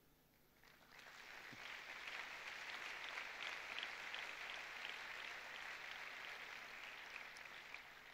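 Audience applauding, faint. It swells in about a second in and then holds steady.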